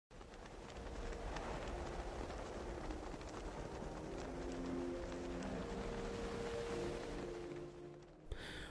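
Intro title music: a rushing noise bed with soft held notes that change every second or so, and scattered faint clicks. It fades in at the start and dips near the end.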